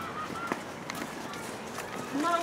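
Faint background voices with a few light knocks.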